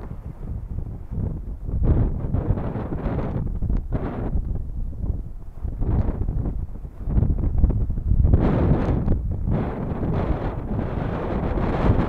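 Wind buffeting the microphone in uneven gusts, a low rumbling noise that rises and falls, strongest about eight to nine seconds in.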